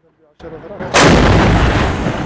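Tank's main gun firing once about a second in: a single very loud blast with a long trailing rumble.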